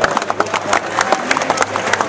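A close group of rugby players clapping by hand: many quick, irregular claps, with voices mixed in.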